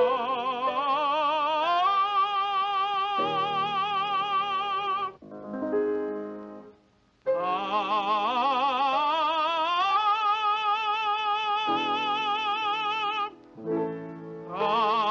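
A male tenor voice singing without words, trying out its high range with piano accompaniment: two long phrases with strong vibrato, each climbing to a held high note, with a short piano passage between them about five seconds in.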